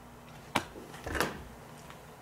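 A sharp plastic click about half a second in, then a short scraping rustle a little after a second: a software disc being handled and taken out of its case.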